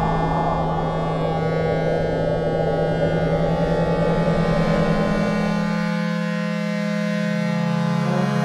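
Algorithmic electroacoustic music made in SuperCollider: a sustained low drone of many held tones layered over a grainy noise texture. The noise layer drops out about six seconds in, leaving only the steady tones.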